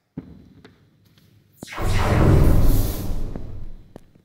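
A short thud, then about a second and a half later a loud, deep boom that swells and dies away over about two seconds.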